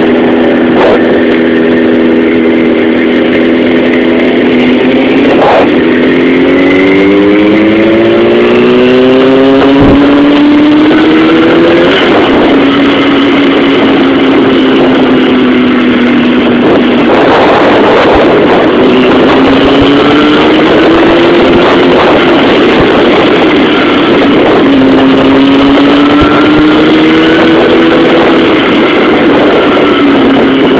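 Sport bike's inline-four engine, picked up by a phone inside the rider's helmet while riding, under constant wind and road rush. The engine note holds steady at first, climbs in pitch as the bike accelerates through the middle, then eases off and pulls up again twice more.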